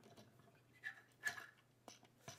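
Faint handling of a small plastic action-figure gun accessory: a few light clicks and rubs of plastic parts. The loudest comes about a second and a quarter in, with a sharp click near the end.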